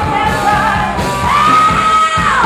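Loud live rock music: a woman belts out a vocal over the band. Her voice glides up a little over a second in and holds a long high note.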